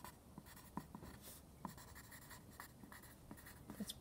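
Pencil writing on lined notebook paper: faint, short strokes at an uneven pace.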